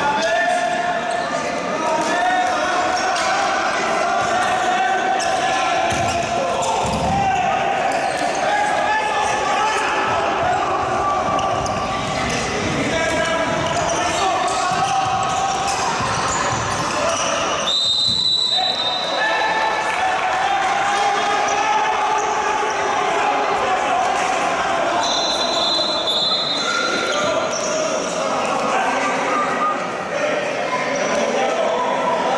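Handball game in a large indoor hall: players and benches shouting across the court over the ball bouncing on the floor. A referee's whistle sounds about 18 seconds in and again, split into short blasts, around 25 seconds.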